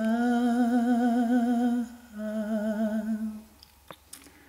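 A lone voice, without accompaniment, holding two long notes with vibrato: the first lasts about two seconds, and the second follows after a short break and lasts a little over a second.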